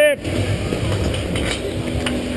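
Courtside ambience at an outdoor street hockey game: a teammate's shout cuts off right at the start, then a steady noisy rumble with distant voices and a few faint clicks.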